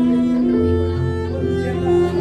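Cello and digital stage piano playing live together: the cello bows long sustained notes, with a low note coming in about a quarter of the way through, over the piano's accompaniment.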